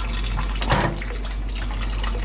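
Kitchen tap running into a stainless-steel sink as water is run into and through natural intestine sausage casings, a steady splash and trickle. A brief louder sound comes about three quarters of a second in.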